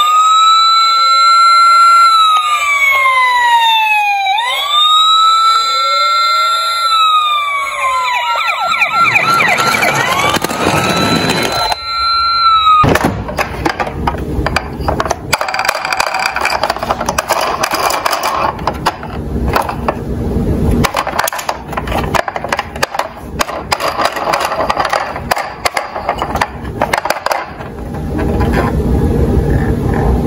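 Toy police car's electronic siren wailing, its pitch sweeping slowly up and down, then breaking into a fast warbling yelp before cutting off sharply about twelve seconds in. A rougher, noisier, irregular sound follows for the rest.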